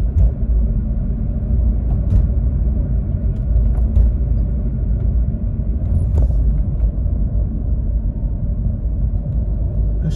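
Steady low rumble of a car's tyres and engine heard from inside the cabin while driving on a highway, with a few faint clicks.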